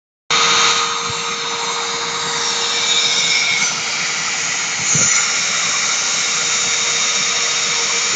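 Dremel MultiPro rotary tool running at high speed as the spindle of a homemade CNC machine, a loud steady whine, its bit cutting into a cardboard sheet.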